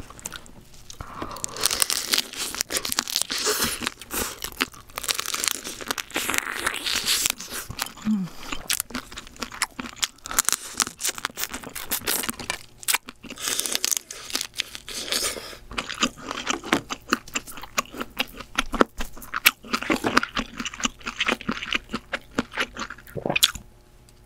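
The shell of a steamed crab cracking and crunching as it is broken apart and eaten close to the microphone, a dense run of crisp clicks and crackles, with chewing. The sound stops abruptly just before the end.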